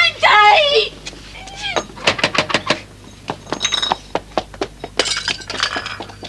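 A woman's loud cry, then a quick run of sharp knocks and clatters, with more sharp hits near the end.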